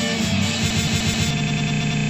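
Band music with electric guitar. About a second and a half in, it gives way to a steady, evenly repeating buzz that holds unchanged.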